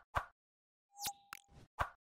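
Logo animation sound effects: a string of about five short pops spread over two seconds, with a brief steady tone sounding under the middle ones.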